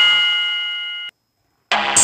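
Microsoft Office clip-art MIDI music played through Synthesia: the last chord of one piece holds and fades, then cuts off about a second in. After half a second of silence the next MIDI piece starts, bright and busy, with electronic synth and drum sounds.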